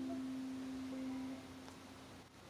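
The last note of a banjo ringing out and fading, dying away about a second and a half in, leaving only faint hiss.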